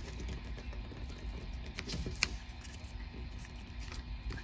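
A sheet of origami paper rustling faintly as fingers fold it over by a third and press along the crease, with a few light ticks of paper about two seconds in.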